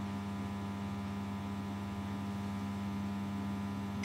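Steady electrical mains hum: a constant low drone with a row of evenly spaced overtones, unchanging throughout.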